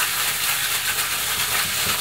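Thin plastic food bag crinkling and rustling continuously as hands knead chicken breast pieces coated in potato starch and sake through it.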